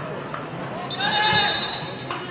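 A single loud, drawn-out shouted call lasting about a second, starting about halfway through, over fainter voices in the background.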